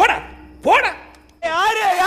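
Two short yelps, about two-thirds of a second apart, each sliding up and then down in pitch like barks. About one and a half seconds in, a long, wavering, high-pitched cry begins.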